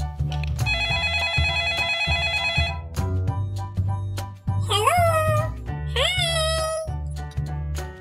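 A phone ringtone with a steady, slightly warbling ring from about one to three seconds in, over background children's music with a steady bass beat. Later come two short, high sounds of a child's voice.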